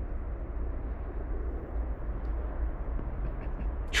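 Steady low rumble of an approaching freight train's diesel locomotives (an EMD unit leading two GE Dash 9s), still far off and running at full throttle.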